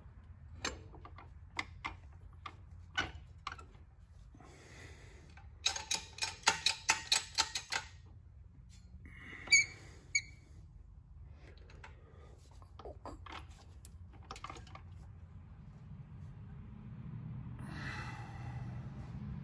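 Scattered metallic clicks and taps from a four-speed manual transmission on a transmission jack being worked into line with the bell housing, with a quick run of clicks, about five a second, for some two seconds about six seconds in, and a single ringing metal clink near the ten-second mark.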